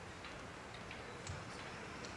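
Faint steady background hiss with a few sharp, irregularly spaced clicks.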